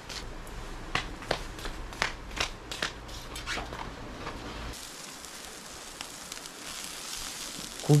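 Charcoal grill with meat going on: a dozen or so sharp crackles and clicks, then, after an abrupt change about four and a half seconds in, a steady sizzling hiss of meat cooking over the coals.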